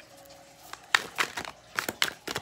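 Tarot cards being handled: a quiet start, then a quick run of about five sharp flicks and snaps of card stock in the second half as a card is pulled and brought to the table.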